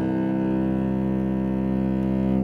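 Cello holding one long, steady bowed note in a piece of classical music.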